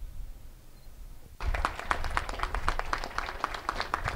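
A low hum on the recording, then, about a second and a half in, an audience starts clapping in scattered, irregular claps.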